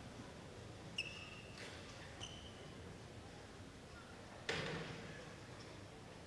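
Quiet indoor sports-hall ambience with two short high squeaks of court shoes on the badminton floor, about one and two seconds in, and a single sharp knock about four and a half seconds in, the loudest sound.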